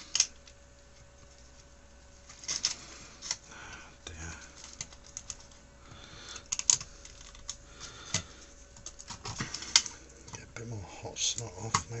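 Scattered light clicks and taps from fingers and pliers handling a circuit board and its wiring inside a metal electronics case, as the board is worked loose, over a faint steady tone.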